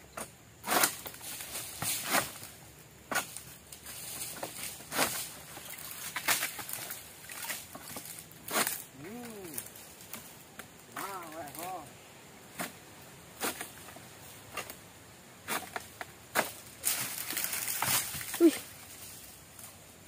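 Long-pole oil palm sickle (egrek) cutting a palm frond from the crown, in repeated sharp strokes about once a second, with a longer rustling stretch near the end.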